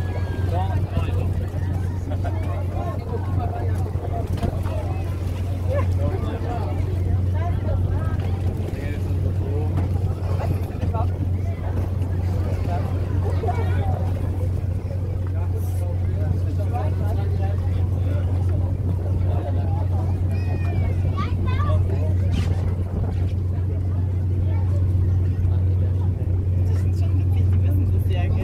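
A boat's engine running with a steady low drone, under the chatter of many people's voices.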